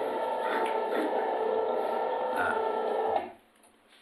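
A steady mechanical whir with several held tones and a few light clicks, cutting off suddenly about three seconds in.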